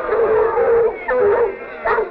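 A pack of dogs baying and howling in long, overlapping, wavering calls, dipping briefly near the end. The sound comes through the thin, band-limited soundtrack of an early-1930s sound film.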